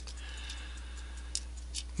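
Faint steady low electrical hum and hiss from the recording, with a sharp computer mouse click about one and a half seconds in as a software tab is selected.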